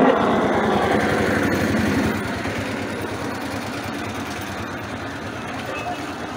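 Auto-rickshaw's small engine running with a rapid pulsing beat, growing fainter.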